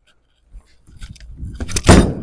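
A bowler's approach with scuffs and clatter building up, then the loud thud of the Roto Grip Attention Star bowling ball landing on the lane at release, near the end, as it starts to roll.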